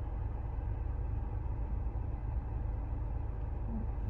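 Steady low rumble of a car cabin's background noise, with no other sound standing out.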